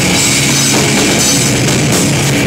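Rock band playing live, loud and dense: a Tama drum kit, bass guitar and electric guitar through stage amplifiers.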